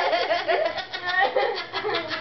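People laughing in a quick, steady run of ha-ha pulses.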